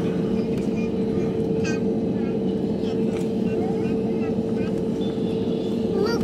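Jet airliner cabin noise while taxiing: a steady engine hum carrying one constant tone, heard from inside the cabin, with faint voices under it.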